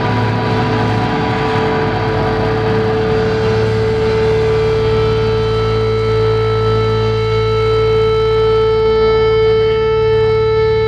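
Amplified electric guitar feedback: a loud, steady, high sustained tone ringing over a low amplifier hum, with no drumming. The upper overtones grow stronger toward the end.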